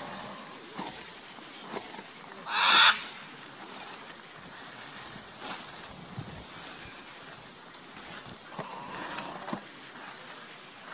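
A single loud squawk from a scarlet macaw (Ara macao cyanoptera), lasting about half a second, comes about two and a half seconds in. A steady faint hiss and a few soft clicks fill the rest.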